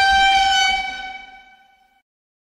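A single held horn-like tone at one steady pitch, loudest at the start and fading away over about a second and a half.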